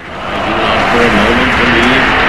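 Loud, steady roar of warplane engines that swells up over the first half second and then holds, with a faint wavering drone underneath.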